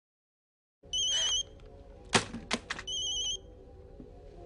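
Mobile phone ringing with a warbling electronic trill in two short bursts, starting about a second in after silence. Between the rings come two sharp knocks about half a second apart, the first the loudest sound here.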